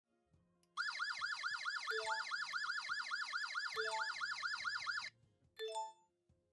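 Wi-Fi alarm hub's siren triggered by the panic button, wailing in rapid falling sweeps, about five a second, that stop abruptly about five seconds in. A short rising three-note chime sounds three times, the last one just after the siren stops.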